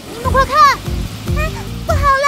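A cartoon character's voice exclaiming, over background music with low repeated bass notes.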